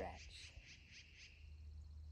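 Near-silent outdoor ambience: a low steady rumble with faint high chirps in the first second or so.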